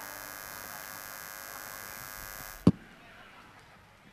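Steady electrical buzz-hum from a live microphone and PA, with a high hiss over it, cut off by a sharp click nearly three seconds in, after which only faint background noise remains.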